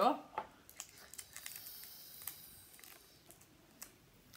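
Breath blown through a plastic drinking straw into a latex balloon, a faint airy hiss as the balloon inflates, with a few small clicks of handling.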